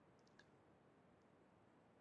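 Near silence: faint room hiss with a few very faint clicks early on.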